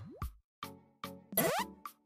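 Background music with a steady, evenly spaced beat. A short rising pitch sweep comes right at the start, and a louder rising sweep about a second and a half in, like transition sound effects.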